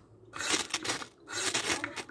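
Steel striker scraped hard down a jumbo ferro rod twice, each stroke about half a second long, showering sparks onto a pile of birch bark scrapings, which catch alight by the second stroke.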